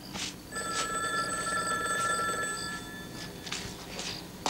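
A telephone ringing: one ring of about three seconds, starting about half a second in.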